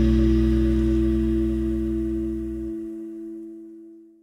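The final held chord of a rock song ringing out and fading away. The low bass cuts off about three-quarters of the way through, and the remaining higher notes die away at the end.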